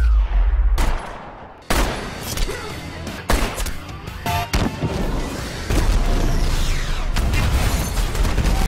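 Gunfire and explosions from an action film's shootout scene, mixed with the film's music score. Sharp shots and heavy booms come in quick succession, with sudden jumps in loudness between edited shots.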